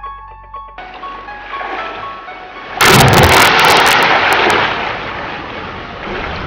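Soundtrack keyboard music with a steady rushing water noise cutting in about a second in. About three seconds in, a loud burst of noise with sharp crackles hits and fades over the next two seconds.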